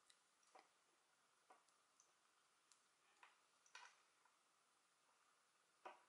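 Near silence with about half a dozen faint, short clicks from fingernails and a metal crochet hook as chain stitches are worked.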